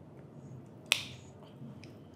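The straight cutter blade of an RJ45 crimping tool snipping through the eight wires of a four-pair network cable in one sharp click about a second in.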